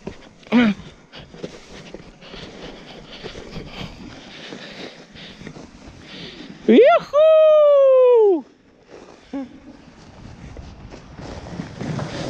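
A wooden sled runs down a packed-snow track with a steady scraping hiss. About seven seconds in comes a loud, high whoop from a rider: it jumps up, then slides down in pitch over more than a second. A brief shorter call comes just after the start.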